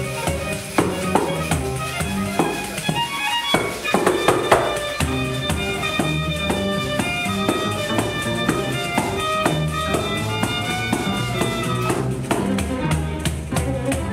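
Two violins bowing a melody over a pandeiro, the Brazilian frame drum with jingles, which plays a quick, dense run of strokes.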